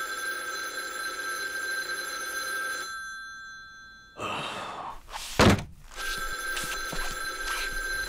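Wall telephone ringing twice, each ring a steady bell tone lasting two to three seconds, before it is answered. Between the rings, a short rush of noise and a loud thump about five and a half seconds in.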